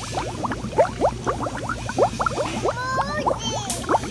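Water bubbling in an aerated lobster tank: a dense, quick run of small burbling bubble sounds over a steady low hum. About three quarters of the way through, a brief high voice sound cuts in, and a single sharp click comes just before the end.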